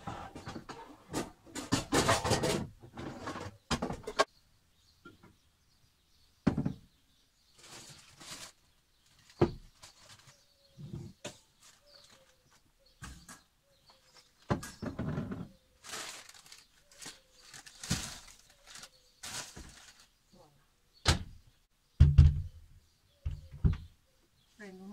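Stainless steel cooking pots being taken out of low storage and set on a kitchen counter: irregular clatters and rustling with short pauses, and a couple of heavier thumps near the end.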